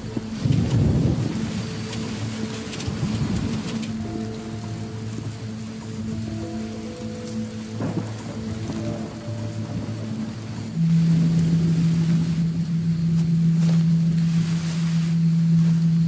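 Film soundtrack of a night rainstorm: rain with rumbles of thunder in the first few seconds, under a tense music score of held notes. About eleven seconds in, a loud, steady low drone comes in abruptly and holds.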